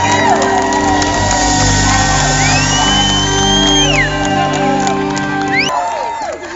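A live rock band holds out the song's closing chord under crowd cheering, and the chord stops suddenly near the end.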